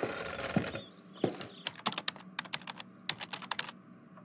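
Laptop keyboard typing: a quick, irregular run of key clicks through the second half, after a short, louder rustling noise at the start.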